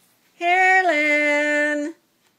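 A girl's voice singing one held note that steps down to a slightly lower note a little under a second in, held steady until it stops just before the end.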